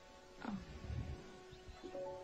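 Faint film score: a soft sustained chord held quietly, with one short sound gliding downward in pitch about half a second in.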